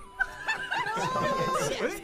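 Several people laughing and snickering at once, their voices overlapping, with a drawn-out note that slides up and holds briefly about halfway through.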